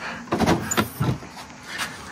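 Side exterior storage compartment door of a Winnebago View motorhome being unlatched and opened: a latch click and a few knocks.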